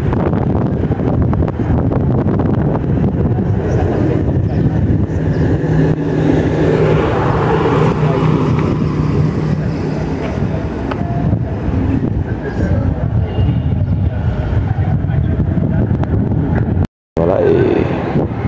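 Outdoor street noise with a vehicle engine running, a steady low hum for a few seconds mid-way, over a constant rumble; the sound drops out for a moment near the end.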